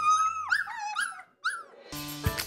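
A puppy whimpering and yipping: about five short, high whines in quick succession, the first the longest, stopping shortly before the end.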